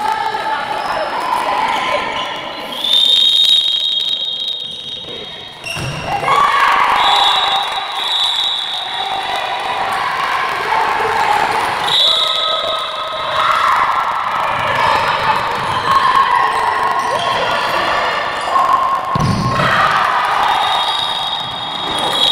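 A handball bouncing on a wooden indoor court, with players' shouts echoing in a large sports hall. Shrill whistle tones sound several times, each held for a second or two.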